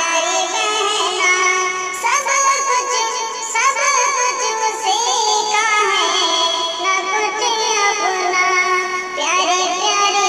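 A solo voice sings a devotional Urdu naat in long melodic runs, with rising slides in pitch about two, four, five and nine seconds in.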